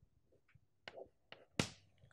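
Chalk tapping on a chalkboard while writing: a few faint taps, then a sharper click about one and a half seconds in.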